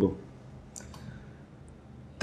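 Quiet room tone with a few faint, short clicks about a second in and another near the end.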